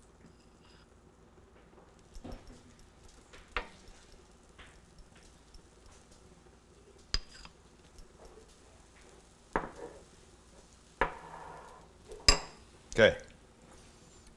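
A metal spoon clinking and scraping against a ceramic bowl as pancake batter is spooned onto a hot buttered griddle: about seven separate sharp clinks spread over the stretch, above a faint low sizzle of butter.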